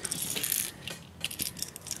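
Light metallic clicking and rattling from a LiveTarget Bluegill lipless crankbait as it is handled and turned over: its internal rattles and treble hooks clicking, in a quick flurry during the first second, then a few scattered clicks.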